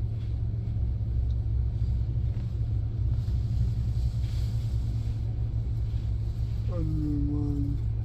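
Minivan engine idling, heard from inside the cabin as a steady low rumble. A short voiced sound comes in about seven seconds in.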